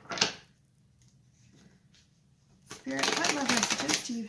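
A deck of tarot cards being shuffled: a short, quick burst of card clicks just after the start, then, about three seconds in, a longer run of rapid flicking clicks as the cards are riffled.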